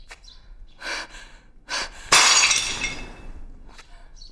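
A pottery jar smashing on the ground about halfway through, a sudden loud crash of breaking crockery that dies away over about a second, after a couple of shorter sounds.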